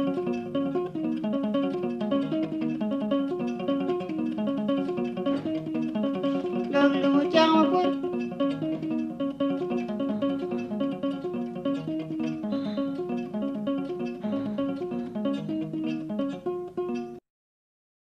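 Acholi music without singing, led by a plucked string instrument playing a quick, repeating melodic figure, briefly louder and brighter a little before the middle. The music cuts off abruptly about a second before the end, leaving silence.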